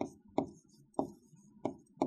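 Pen or stylus tapping and clicking against the writing board while words are handwritten on it: a sharp click roughly every half second, four or five in all.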